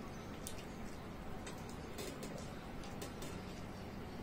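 Faint chewing with scattered soft clicks and smacks from people eating by hand, over a steady low room hum.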